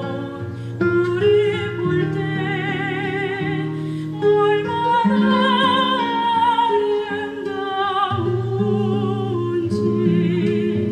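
A soprano singing long held notes with a wide vibrato, accompanied by a classical guitar.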